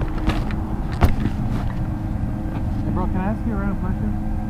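Suzuki DR200 single-cylinder motorcycle engine idling steadily at a low level, with one sharp click about a second in. A faint voice is heard near the end.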